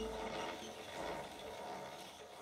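Hand-cranked bench lathe being turned by its crank handle: a fairly quiet, steady mechanical running sound of its moving parts.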